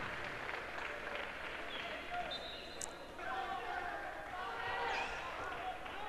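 Echoing indoor sports-hall ambience: distant voices of players on the court, with a handball bouncing on the hard floor.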